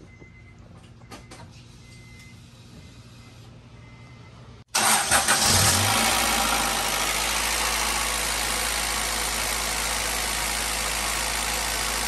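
Acura Integra GSR's B18C1 four-cylinder engine coming on suddenly about halfway through, with a short rough burst as it catches, then settling into a steady idle. It has just been started so the freshly refilled power steering system can circulate fluid and be checked for leaks.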